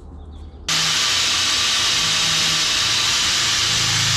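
Corded angle grinder running with its disc lightly grinding along the steel teeth of a hedge cutter blade to sharpen them, a steady hissing noise that starts suddenly under a second in.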